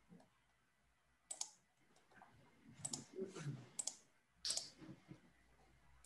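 A handful of sharp computer mouse clicks, spaced irregularly, as menu options are clicked through.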